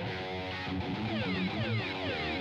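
Electric guitars playing, with sustained notes underneath and a quickly repeating falling sweep high up.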